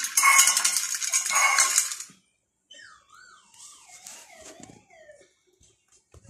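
Empty stainless steel bowl scraping and rattling on a stone floor as kittens bat it, ringing as it knocks, for about the first two seconds. After a short pause a fainter wavering tone slides down in pitch for about two seconds.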